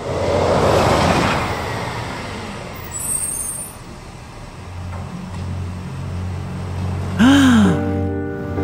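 Cartoon truck sound effects: a rushing vehicle noise that eases after a couple of seconds, then a steady low engine hum. A short tone rises and falls about seven seconds in.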